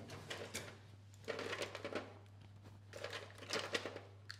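Faint rustling of packaging and light clicks and knocks as cannulation and blood-sampling supplies are taken from a trolley, in two short flurries, over a steady low electrical hum.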